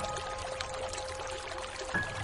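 Slow, soft solo piano music over a steady hiss of rain: a low held note fades away while a single higher note sounds at the start and another just before the end.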